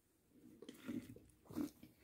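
Faint sipping of a thick smoothie through a drinking straw: a couple of soft mouth sounds, one about a second in and another near the end.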